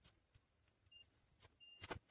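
Faint continuity beeper of a DT9208A digital multimeter giving two short high beeps, the second a little longer, as a probe touches the stripped wire ends: each beep signals a closed circuit between the probes. Light clicks and rustles of thin wires being handled.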